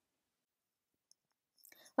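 Near silence in a pause of a woman's recorded narration, with a faint click or two and a soft breath before her voice comes back in at the very end.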